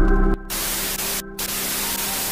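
Background music cuts off a third of a second in and gives way to a television-static sound effect: an even white-noise hiss over a steady low hum. The hiss drops out briefly twice.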